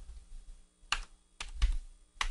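A few scattered keystrokes on a computer keyboard as numbers are typed in, with quiet between the clicks.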